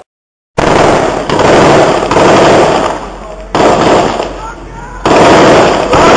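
Rapid gunfire, heavily distorted and crackling as it overloads the camera microphone, starting suddenly about half a second in and easing off for a stretch in the middle, with men's voices faintly under it.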